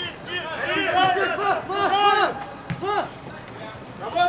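Men shouting loud, drawn-out calls across a football pitch during an attack on goal, with one short sharp knock near the end of the shouting.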